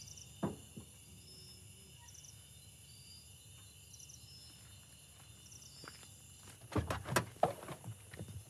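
Night insects, crickets among them, chirping in short high trills that repeat about once a second. A single click comes about half a second in, and a short burst of louder knocks and scuffs near the end.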